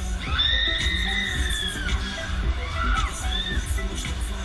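Riders on a swinging, spinning thrill ride screaming: one long high scream of about two seconds, then two shorter screams near the end. Fairground music with a pounding bass plays underneath.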